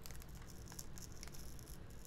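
Faint paper crackling and small ticks as a sticker seal on a beauty box's paper wrapping is carefully peeled open by hand.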